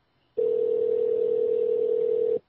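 Telephone ringback tone heard over the phone line: one steady two-second ring signal, the line ringing at the far end while the call waits to be answered.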